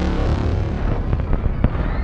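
Film-trailer destruction sound effects: a dense, deep rumble with a few sharp cracks in the second second, mixed with music.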